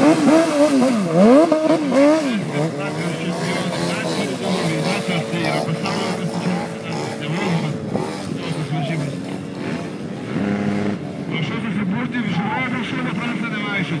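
A vehicle engine being revved hard. Its pitch swoops down and back up several times in the first two seconds, then holds at a steadier level.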